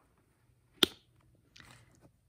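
A single sharp click a little before halfway through as the flap of a leather bag is pressed shut and its metal snap button catches, then a brief soft rustle of the leather being handled.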